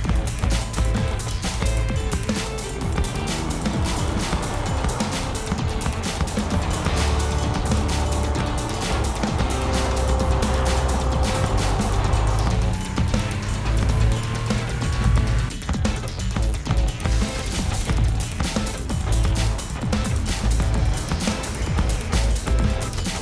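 Film soundtrack music with a steady beat, with a car engine and tyres on the road heard under it as the car drives past.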